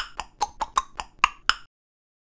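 A quick run of about nine short, sharp clicks, about five a second, each with a slightly different pitch. The sound then cuts out completely for the last part.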